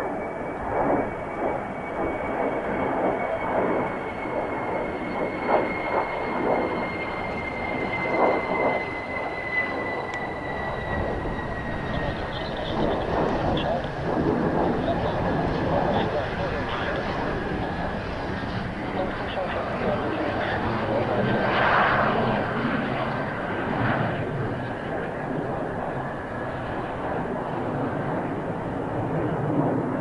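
Mitsubishi F-2 fighter's single turbofan engine running on the ground after touchdown, a steady jet roar with a thin whine that slides slowly down in pitch over the first ten seconds as the engine winds down during the landing rollout.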